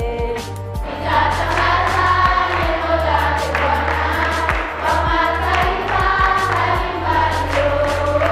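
A choir of schoolchildren singing together, with hand-clapping along to the song.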